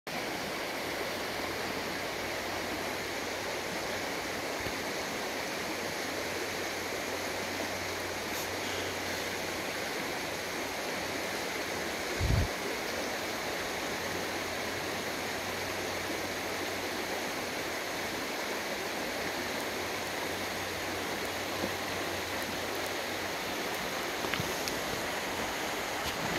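A shallow river running steadily over stones, a constant rush of water. A single brief low thump about halfway through.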